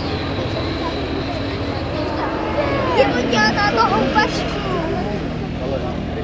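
Twin radial engines of a Beech C-45 Expeditor in flight, a steady low drone. Spectators talk close by, loudest around the middle.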